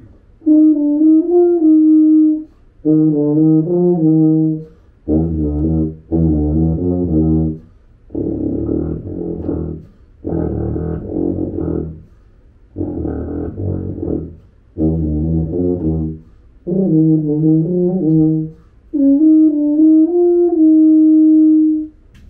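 A tuba is played in nine short phrases with breaths between them. It starts on sustained high notes, runs down into its low register and climbs back up, and ends on a long held note.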